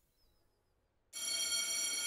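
School bell ringing in a classroom: a single steady, high-pitched electronic tone that starts suddenly about a second in and holds.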